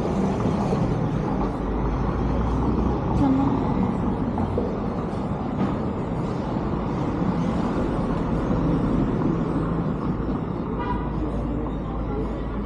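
Busy street ambience: a steady hum of traffic with voices of passers-by, and a short pitched tone near the end.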